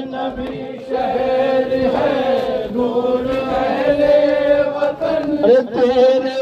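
Voices chanting a nauha, a Shia mourning lament, in long held notes. A rising call near the end leads into the next line.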